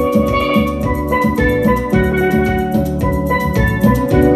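A pair of steel pans played with mallets, a melody of ringing, quickly struck notes over a backing track with bass and drums.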